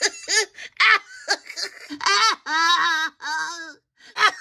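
A woman laughing in a string of high-pitched bursts, the last few drawn out longer, trailing off just before the end.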